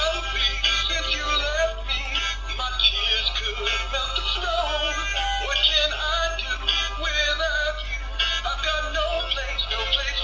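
Plush animated reindeer Christmas decoration playing a sung Christmas song through its built-in speaker, a male voice with music accompaniment.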